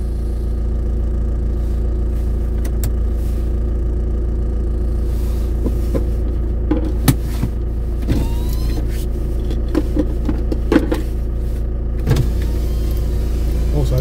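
Steady low hum of a stationary car engine idling, with a few short clicks and faint street sounds over it.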